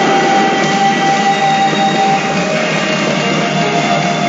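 Rock-style soundtrack with electric guitar playing steadily from a pachinko machine's speakers during its bonus-chance mode.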